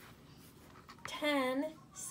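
A woman's voice reading aloud, starting about a second in after a quiet moment.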